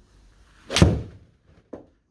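A 7-iron striking a golf ball off a hitting mat: one sharp, loud impact about three-quarters of a second in, a solidly struck shot. A brief, softer sound follows near the end.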